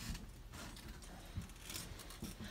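Quiet room noise in a pause between words, with a faint click about one and a half seconds in.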